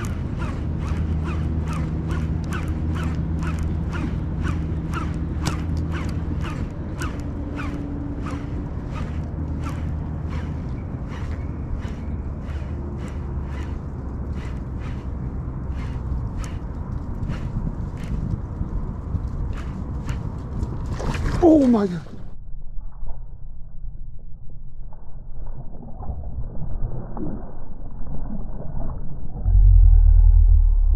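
Edited suspense sound design: a steady ticking that gradually slows over a low droning bed. About 21 seconds in, a falling pitch sweep cuts the sound to a dull, muffled tone, and near the end a heavy low boom hits.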